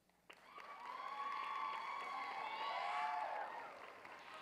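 Audience applause with high-pitched cheering and whoops. It breaks out suddenly after a moment of near silence and swells over the first second.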